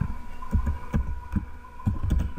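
Computer keyboard keystrokes: about half a dozen separate, irregularly spaced taps, each with a dull thud, as code is deleted and typed. A faint steady hum runs underneath.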